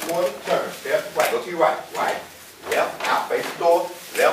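A person talking, with no other clear sound.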